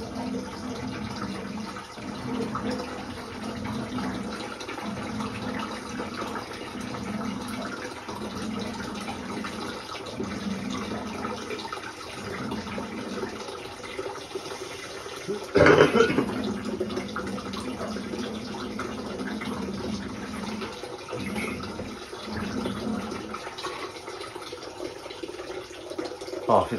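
Water draining out of a hot-water cylinder through its pipework, running steadily with a gurgle that breaks off every few seconds, as the tank is emptied. A single loud knock comes about sixteen seconds in.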